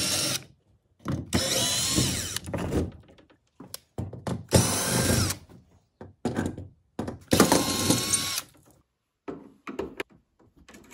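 Yellow brushless cordless drill driving screws in several separate runs of about a second each, the motor's pitch rising at the start of each run.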